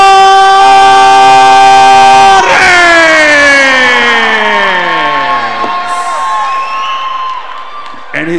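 Ring announcer's long, drawn-out call of a fighter's name, held on one pitch for about two and a half seconds, then sliding down in pitch for about three more, while the crowd cheers.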